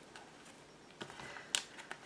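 Faint handling of a ribbon tie and cardstock pages on a mini scrapbook album, with soft rustles and small ticks and one sharp click about one and a half seconds in.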